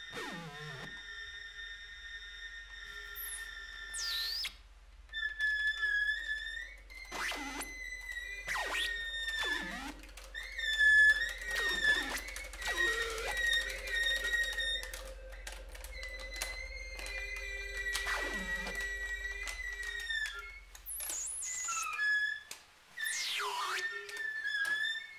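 Experimental live ensemble music: a high held tone that wavers and shifts in pitch, cut across again and again by steep downward glides. Under it runs a steady low hum that stops a few seconds before the end.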